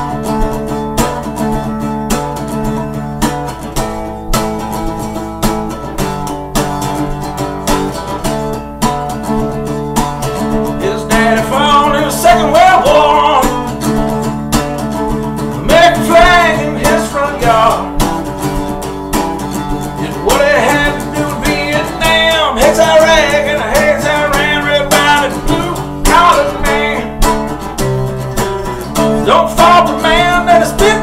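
Acoustic guitar strumming chords in a steady rhythm, with a melody sung without words coming in over it in phrases from about eleven seconds in.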